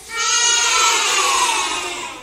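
A class of young children calling out one word together in chorus, drawn out for about a second and a half and fading toward the end.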